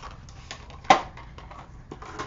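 Handling noise from small objects being moved by hand: one sharp click a little under a second in, with a few fainter ticks around it.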